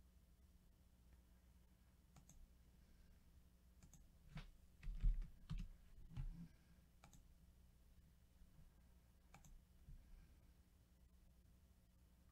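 Faint, scattered clicks of a computer keyboard and mouse, with a brief cluster of louder taps and knocks about four to six seconds in.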